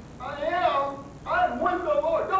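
Speech only: a man talking into a microphone, starting a moment in after a brief quiet pause.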